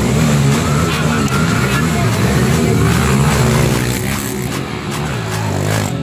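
Small trail motorcycle engine revving, its pitch rising and falling over and over, with music underneath.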